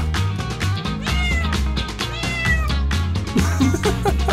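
A cat meowing twice over background music with a steady beat.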